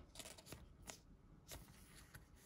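Near silence with faint handling of a trading card and its plastic sleeve: soft rustles and a few light clicks.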